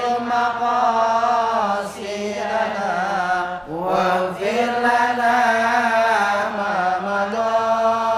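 Men's voices chanting an Islamic devotional song (sholawat) together in unison into microphones, in long, drawn-out melodic phrases, with short breaks for breath about two and four seconds in.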